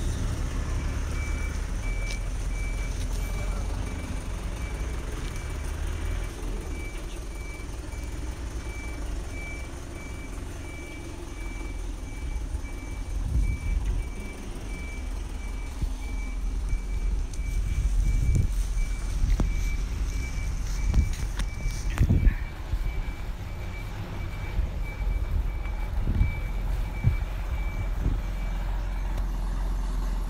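Truck's reversing beeper giving a steady run of evenly spaced high beeps over its running engine, with a few knocks and thumps; the beeping stops near the end.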